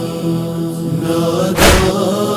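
Backing chorus of men's voices holding a sustained chanted drone beneath a nauha lament, with one heavy beat about one and a half seconds in, part of a slow beat that falls roughly every two seconds.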